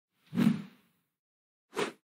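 Two whoosh transition sound effects for an animated end card: a louder, fuller one about half a second in, then a shorter, higher one near the end.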